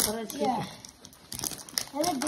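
Crinkling of a foil blind-bag toy packet as it is pulled from a plastic egg and handled, heard mostly in a pause between voices in the middle.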